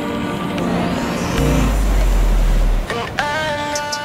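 Surf washing over rocks, with a loud deep rumble from about a second and a half in to nearly three seconds. About three seconds in, background music with held chords comes in.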